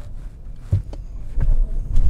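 Car cabin road and engine rumble while driving, with a few short knocks and rattles from about a second in as the car goes over bumps.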